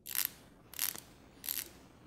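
The stainless steel rotating dive bezel of a Seiko 5 SRPC61 'bottlecap' watch, ratcheting as it is turned by hand: three short runs of crisp, nice and loud clicks.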